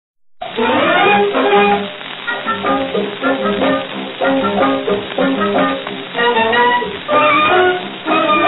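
Instrumental opening of a 1941 Hindi film song, played by a small film orchestra with a melody line of separate notes. It starts about half a second in, and its thin, narrow sound is that of an old recording.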